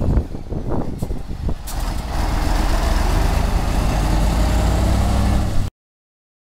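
Mercedes-Benz 2235 truck's diesel engine running. For the first two seconds it is uneven, with knocks. From about two seconds in it runs steady, with a steady hiss over it, and the sound cuts off suddenly near the end.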